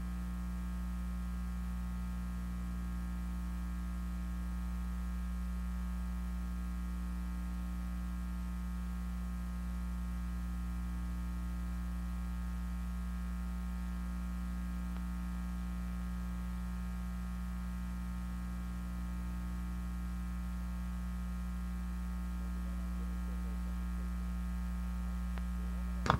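Steady electrical mains hum, a low unchanging buzz.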